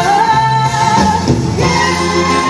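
A woman singing one long held note over a live band of drums, bass and guitar; the note ends about halfway through.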